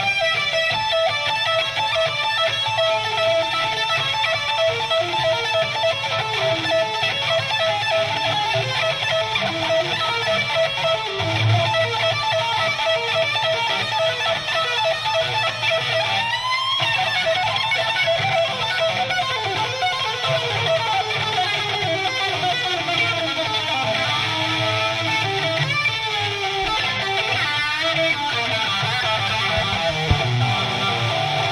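Live hard-rock band playing an instrumental passage led by an electric guitar solo over bass and drums, with long sustained lead notes and a quick upward slide about halfway through.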